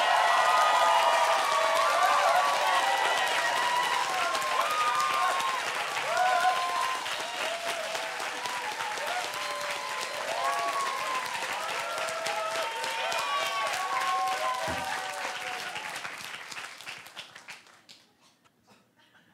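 Audience applauding, with voices calling out and cheering over the clapping. The applause dies away over the last couple of seconds.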